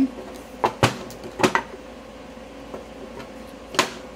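Wooden boards being slid down into a welded steel box pocket, knocking against the steel and each other: five short sharp knocks, four in the first second and a half and one near the end.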